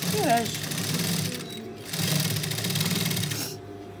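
Industrial lockstitch sewing machine stitching a fabric bias strip in two runs of about a second and a half each, with a brief stop between them.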